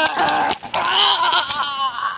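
A loud, drawn-out, wavering bleat-like cry. It breaks off briefly about half a second in, then resumes and trails off near the end.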